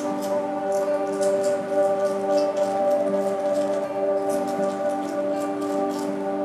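Calm background music with sustained tones, over which a small spoon scrapes and stirs damp paper-pulp and glue putty in a lacquer bowl, giving quick, irregular scratchy strokes.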